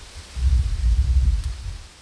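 Wind buffeting the microphone: an uneven low rumble that swells about half a second in and dies away near the end.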